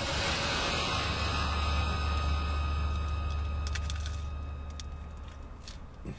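A vehicle passing close by outside the parked car: a low rumble that swells and then fades away. It opens with a sudden rustle of a paper food wrapper, and a few sharp crackles come near the end.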